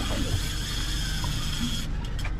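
Fishing reel's clicker buzzing steadily as a shark pulls line off, cutting off suddenly near the end as the reel is engaged for the strike.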